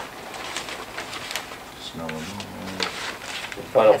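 Quiet meeting-room sounds with faint clicks of paper being handled. About halfway through comes a low, level murmured hum from a voice away from the microphone, and near the end a man starts reading aloud into the microphone.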